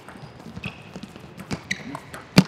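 Table tennis rally: irregular sharp ticks of the celluloid-type ball off bats and table, the loudest about one and a half seconds in, with two short high squeaks of shoes on the court floor.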